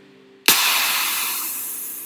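A held music chord fades out. About half a second in comes a sudden loud whoosh-and-hit sound effect of the kind used in cinematic trailers, which dies away slowly as a long hiss.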